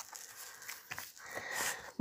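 Thick, textured wallpaper rustling and scraping faintly as it is folded over and pressed down by hand, with a few soft taps and a slightly louder rustle near the end.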